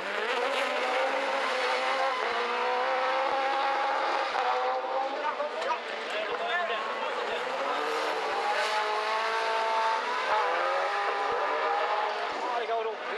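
Racing engines of rallycross buggies revving hard through a corner, the pitch climbing, breaking off and climbing again a few times.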